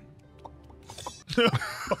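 Faint background music, then about a second in a short cough-like burst of breath followed by a voiced "uh" from a man.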